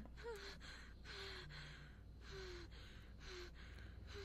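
Faint, rapid gasping breaths of a woman hyperventilating, with a short voiced catch about once a second.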